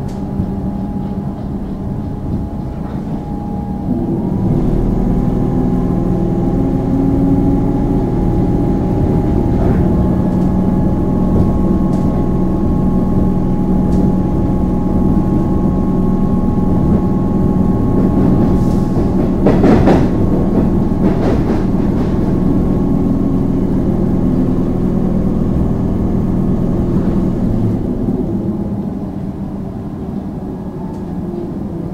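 Interior of an Alstom Comeng electric suburban train under way: a steady rumble of wheels on rail and traction motors with a faint steady whine. The rumble grows louder about four seconds in as the train picks up speed after its stop, and the whine steps up in pitch around ten seconds. A brief louder rush of noise comes about twenty seconds in.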